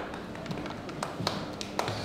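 A handful of sharp, irregular taps and clicks over low room noise.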